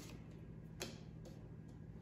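Tarot cards being shuffled by hand: a few faint clicks and slaps of the cards, one a little louder about a second in, over a low steady hum.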